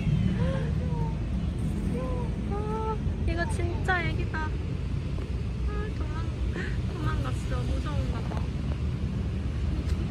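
Steady low hum of urban traffic, with a scatter of short, high chirping calls throughout and a quick falling run of them about four seconds in.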